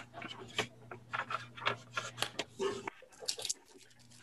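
Sheets of paper being handled and shuffled on a desk: a run of short, irregular rustles and scrapes that stops shortly before the end.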